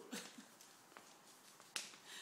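Near silence: a short faint vocal sound at the start, then a small click about a second in and a sharper click shortly before the end.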